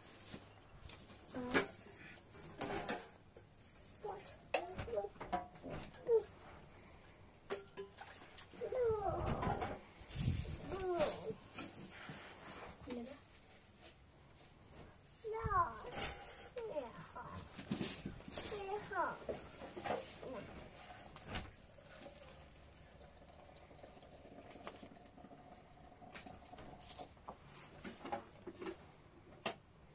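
A voice speaking in short, separated phrases, with crinkling of a plastic bag and light clicks of containers being handled.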